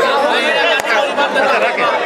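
Several voices talking over one another close to the microphone, a loud overlapping chatter with no single clear speaker.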